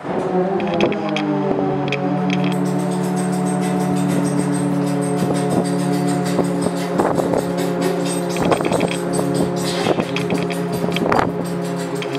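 Lifeboat davit winch hoisting the boat back aboard, with a loud, steady pitched hum that starts abruptly and dips slightly in pitch as it gets going. Irregular metallic clicks and knocks run throughout, the loud cranking of the hoist.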